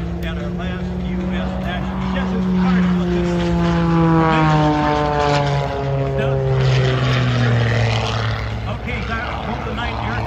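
Aerobatic propeller airplane's engine running overhead, its pitch falling steadily as it passes, loudest about four seconds in.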